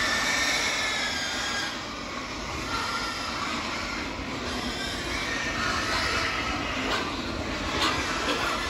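Steady running noise of a pig barn's ventilation fans, with pigs grunting and squealing faintly in the pens.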